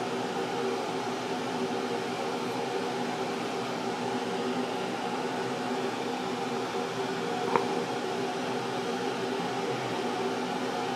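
Steady whir and hum of an air conditioner's fan, unchanging throughout, with a single faint click about seven and a half seconds in.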